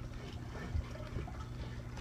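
Quiet background with a steady low hum and faint, soft handling noise.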